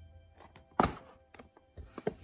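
A cardboard LEGO set box set down on a wooden floor: one sharp thunk about a second in and a softer knock near the end, over faint background music.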